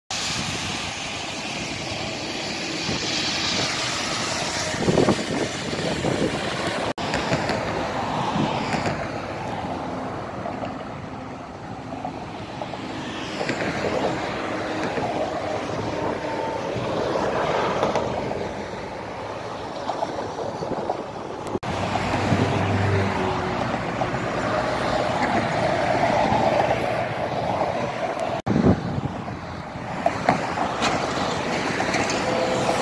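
Road traffic passing close by: cars and lorries going by one after another, each swelling and fading, with tyre hiss off a wet road surface in the first part. The sound breaks off abruptly a few times where one clip cuts to the next.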